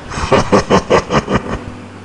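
Laughter: a quick run of short 'ha' pulses, about six a second, dying away about a second and a half in.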